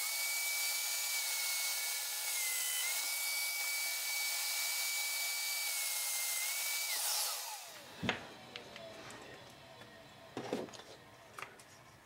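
Festool Domino joiner running with a steady high whine while plunge-cutting a mortise in scrap wood, its pitch dipping slightly for a moment about two and a half seconds in. About seven seconds in it is switched off and winds down with falling pitch, followed by a couple of sharp knocks as it is set down and the wood is handled.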